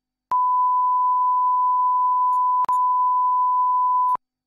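Steady line-up test tone of the kind laid under colour bars at the head of a video tape. It starts with a click just after the start. A brief click and gap break it about two and a half seconds in.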